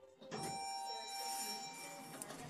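Elevator signal bell ringing with a bright, steady ring of several tones together. It starts about a third of a second in and holds for about a second and a half.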